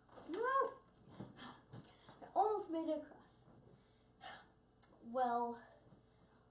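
A boy's short wordless vocal sounds, three of them, each rising then falling in pitch, with a few light knocks in between.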